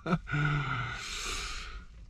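A man's sigh: a short voiced sound at the start that runs into a long breathy exhale, fading out after about a second and a half.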